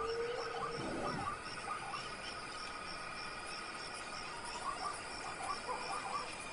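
Insects trilling steadily in a fast, even pulse, with scattered short bird chirps. Near the start comes a single drawn-out call that rises and then holds for under a second, followed by a brief rough, lower sound.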